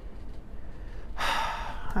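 A person's audible in-breath, a short pitchless hiss lasting under a second, starting a little past a second in.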